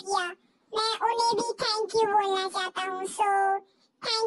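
A very high-pitched, child-like voice talking in quick phrases, with a short gap about half a second in and another just before the end.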